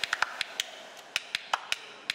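Camera shutters clicking irregularly over a low hiss, several in quick succession at first and then sparser.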